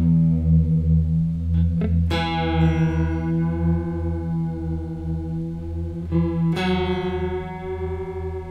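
Electric guitar played through a vibrato-type modulation pedal: a chord rings through, is struck again about two seconds in and once more near the end, each left to sustain with a pulsing, wavering wobble. A wild vibrato that shifts the note.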